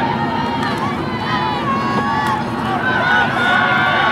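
Spectator crowd at a football game: many voices talking and shouting over one another, steady throughout and a little louder in the second half as the run develops.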